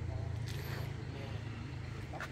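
Low, steady engine hum of a vehicle on the road, fading toward the end.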